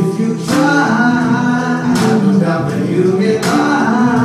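Live gospel song: a man sings into a microphone over organ accompaniment, with three bright cymbal hits about a second and a half apart.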